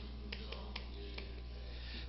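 Chalk on a blackboard while characters are being written: several faint clicks and scrapes of the chalk on the board, over a steady low hum.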